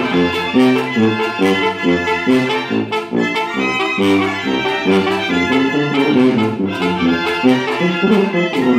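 Mexican banda brass band playing: trombones and other brass carry the tune over a tambora bass drum with a cymbal on top and a snare drum. The brass comes in at the very start, over the drums.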